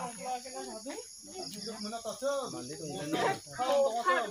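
A person talking, with a steady, high-pitched chirring of insects behind the voice.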